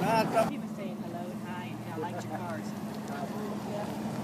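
A car engine running steadily at idle, with faint voices of people around it.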